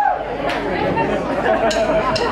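Voices and chatter in a loud club room.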